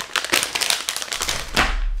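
A clear plastic zip bag holding an LED light strip crinkling and crackling as it is handled and moved about, with a low rumble near the end.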